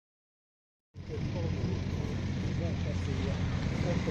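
Silence for about the first second, then a steady low rumble of an idling car engine with people talking in the background.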